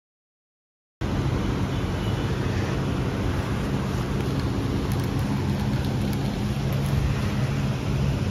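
Silent for about the first second, then electric fans running steadily close by: a low motor hum under a rush of moving air, cutting in abruptly.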